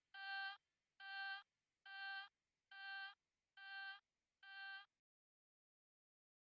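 A single synthesizer note pulsing six times, under a second apart, each pulse a little quieter, dying away into silence about five seconds in: the fading tail of an electronic dance track.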